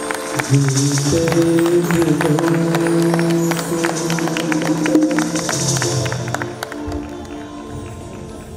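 Live stage band playing a song: a sustained melody over quick percussion taps, the music fading out about seven seconds in.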